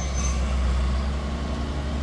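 Bulldozer's diesel engine running steadily, a low continuous rumble.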